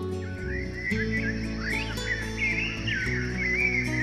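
Background music of held low chords. From about half a second in, a high warbling line of quick gliding, whistle-like calls runs over it.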